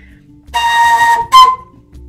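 Colombian gaita, a bamboo duct flute with a beeswax head and a duck-quill mouthpiece, blown twice with a lot of air. It gives a breathy note of about half a second, then a shorter, slightly higher and louder note.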